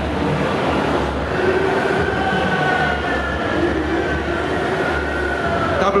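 Steady, loud din of a large, crowded hall: a low rumble with indistinct crowd murmur, no single sound standing out.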